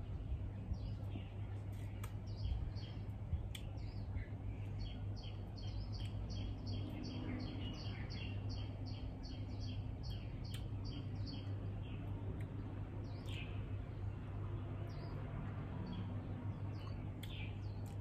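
Small birds chirping outdoors. In the middle there is a run of quick, evenly repeated high notes, about three a second, lasting about five seconds, and near the end a couple of single falling calls, all over a steady low hum.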